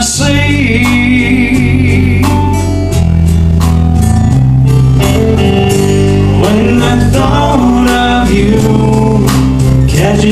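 Country band playing live: strummed acoustic guitar, electric guitar and drum kit, in a passage without sung lyrics.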